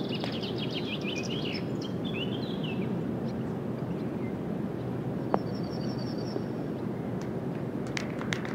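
Outdoor background of birds chirping, busiest in the first three seconds and again briefly around six seconds in, over a steady noise floor. A single sharp click comes about five seconds in.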